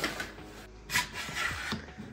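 Parts of a baby bedside sleeper's metal and plastic frame being handled and fitted: a few sharp knocks and rattles, the loudest about a second in, over quiet background music.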